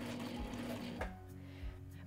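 Background music, with a Sailrite Ultrafeed walking-foot sewing machine stitching and then stopping with a click about a second in.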